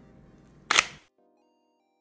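A single sharp camera shutter click about two-thirds of a second in, over quiet background music that cuts out about a second in.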